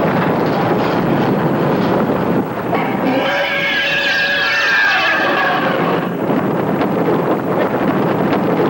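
Roller coaster ride heard from the car: a steady rush of wind and rumble of the train on its track, with riders screaming together for about three seconds in the middle.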